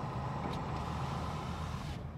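Steady low rumble of a vehicle idling, heard from inside its cab, mixed with the noise of a semi-trailer truck passing close in front.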